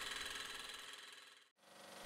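Small Stirling engine generator running, a faint steady mechanical hum that fades out to silence about a second and a half in and then fades back in.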